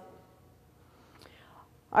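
A pause between a woman's spoken phrases: her voice trails off at the start, a faint click comes about a second in, and a soft breath just before she speaks again.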